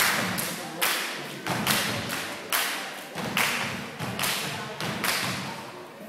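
A step team stepping: sharp stomps and claps in a steady rhythm, about one hit every 0.8 s, each hit trailing off in a long echo.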